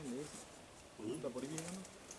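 Quiet men's voices murmuring in two short stretches, with faint clicks of leaves or branches being handled.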